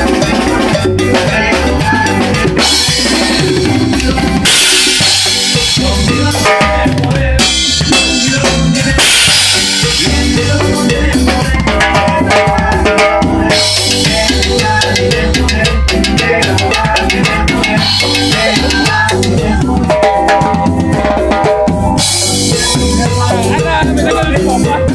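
Acoustic drum kit played live with a band: snare and bass drum keep a steady driving beat, with cymbal crashes every few seconds.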